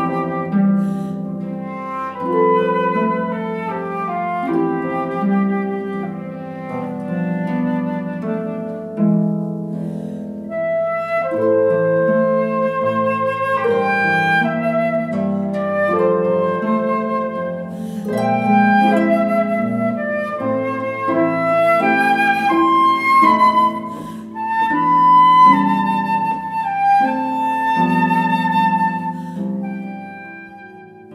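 A harp-and-flute duo playing a slow, gentle piece: a transverse flute carries a sustained, legato melody over the harp's plucked, arpeggiated accompaniment.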